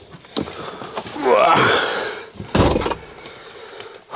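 A Volkswagen van's door slammed shut with one sharp thud about two and a half seconds in. Before it comes a wavering, pitched sound lasting about a second as someone climbs into the seat.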